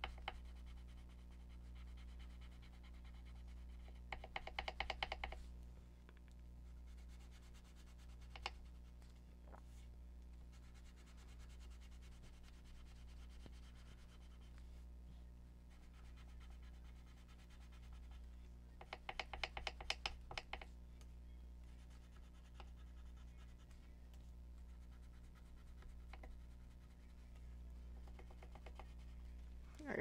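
Watercolour pencil scribbling on paper: two short bursts of quick back-and-forth scratchy strokes, about four seconds in and again near the twenty-second mark, over a faint steady low hum.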